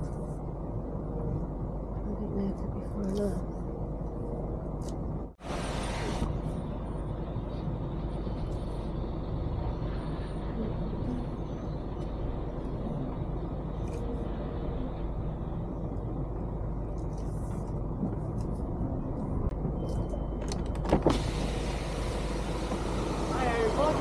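Diesel lorry engine and road noise heard from inside the cab while driving: a steady low drone. It cuts out for an instant about five seconds in, and there is a short knock near the end followed by louder hiss.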